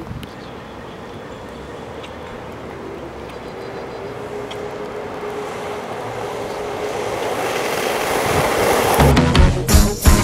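Skateboard wheels rolling on asphalt, a steady rushing that grows slowly louder as the board comes closer. About nine seconds in, music with a strong beat cuts in.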